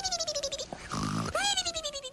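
Ender 3 3D printer's stepper motors whining as the print head moves, twice: each time the pitch jumps up sharply and then slides slowly down, with a buzzy edge.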